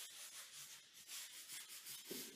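Rapid, fairly quiet back-and-forth scrubbing strokes on a hard floor, about four or five a second, as dirt left by building work is scrubbed off with a cleaning solution.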